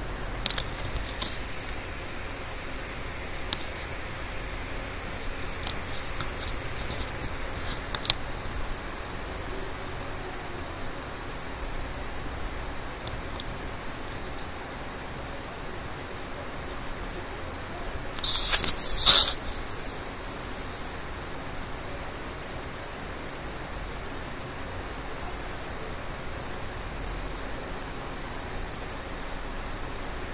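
Steady background hiss with a few faint clicks in the first eight seconds, and a short, louder high-pitched rustle about eighteen seconds in.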